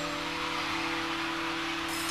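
A rock band's final chord dying away live, with one held note sustaining over a steady noisy haze.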